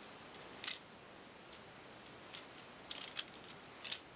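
Plastic toys on a baby's activity jumper clicking and clacking as the baby handles them: one sharp click about half a second in, then a quick run of clicks near the end.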